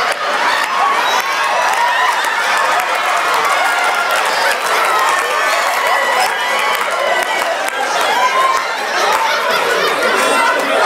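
Live audience cheering and laughing, many voices at once, with scattered clapping; a loud, steady crowd reaction throughout.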